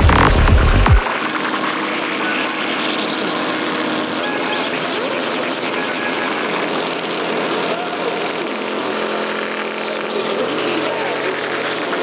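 Dark psytrance track in a beatless breakdown. The kick drum and bassline cut out about a second in, leaving held synth tones and a haze of noisy effects at a steady level.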